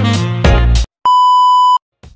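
Background music with a beat cuts off just under a second in. After a short gap comes a single steady, high electronic beep lasting under a second, which stops abruptly.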